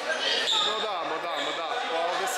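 Several people talking in a large gym hall, their voices echoing off the room.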